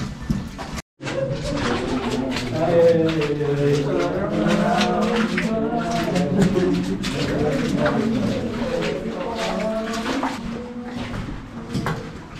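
Indistinct, overlapping voices of several people, with scuffing footsteps and small knocks on a rocky floor. The sound cuts out completely for a moment about a second in.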